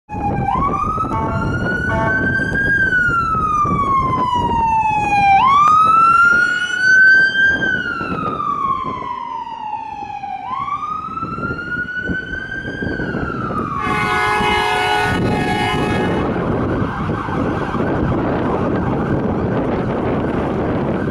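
Ambulance siren on wail: three long cycles, each rising quickly and then sliding slowly down over about five seconds. Near the end two short horn blasts sound, followed by the rush of the vehicle's engine and tyres as it passes.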